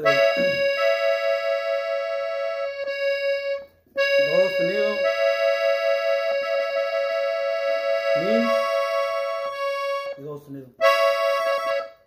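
Diatonic button accordion tuned in E, played slowly in A major: long held treble notes, with higher notes coming and going over one sustained tone. The playing breaks off briefly about four seconds in and again about ten and a half seconds in.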